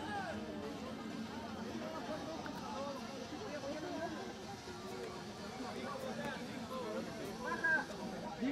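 Distant, overlapping voices of players and spectators at an outdoor rugby match: scattered calls and chatter, none close or clear.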